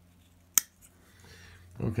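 A single sharp metallic click about half a second in: the thin blade of an old slip-joint folding tool snapping open on its backspring.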